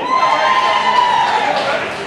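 A spectator's long, high-pitched whooping cheer for the last player introduced, held for nearly two seconds and falling slightly in pitch near the end, over light crowd noise.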